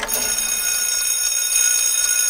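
Alarm-clock bell ringing steadily as a cartoon sound effect, a continuous high ringing.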